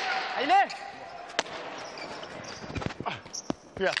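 Hard jai alai ball striking the fronton wall and floor during a rally: one sharp crack a little over a second in, then a few lighter knocks around three seconds in. A long drawn-out shout rises and falls near the start.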